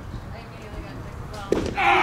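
A pitched baseball smacks into the catcher's mitt, and right after it comes a loud, short shout: the home-plate umpire's call on the pitch.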